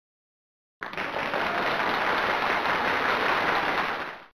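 Applause sound effect: a steady spread of clapping that starts about a second in and fades out at the end, marking the reveal of the correct answer.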